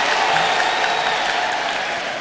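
Audience applauding, the clapping slowly fading away toward the end.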